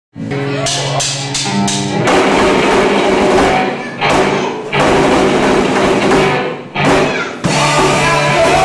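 Live rock band of electric guitar, bass guitar and drum kit playing. Sustained guitar notes with a few evenly spaced drum hits open it, then the full band comes in about two seconds in, with short breaks around four and seven seconds in.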